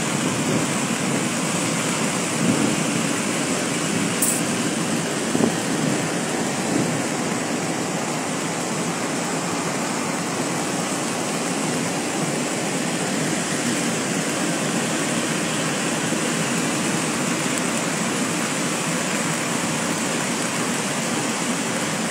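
A tall waterfall in spate after heavy rain, a muddy torrent plunging down a cliff, giving a steady, unbroken rush of falling water.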